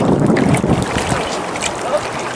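Small waves lapping and splashing against a rocky shoreline, with wind buffeting the microphone.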